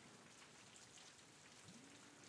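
Near silence with a faint, steady rain background hiss; a faint low hum comes in near the end.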